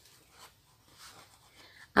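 Faint rustle of cloth and sewing thread as the thread is drawn through cotton fabric and the fabric is handled during hand-sewing, a couple of soft brushing sounds.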